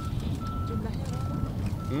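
Reversing alarm of a construction vehicle, beeping a single steady tone about one and a half times a second over a low rumble.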